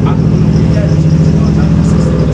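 A motor vehicle's engine idling steadily, a continuous low drone.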